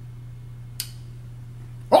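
Steady low hum, with a brief click less than a second in, then a man's sudden loud exclamation of surprise, "Oh!", right at the end.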